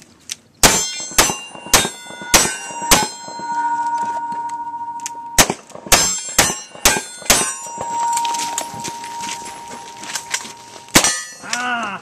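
Single-action revolver shots fired in quick succession at steel plate targets, each hit answered by a ringing clang of the steel. Five shots about half a second apart, a pause of about two and a half seconds while a plate rings on, then five more shots followed by long ringing, and one last shot near the end.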